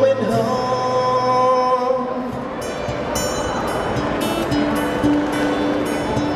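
Twelve-string acoustic guitar playing live in a folk song, with a long held note over the first two seconds, then steady strummed chords.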